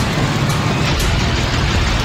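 Loud, steady rumbling noise of wind buffeting the microphone of a camera moving outdoors, with faint ticks about twice a second.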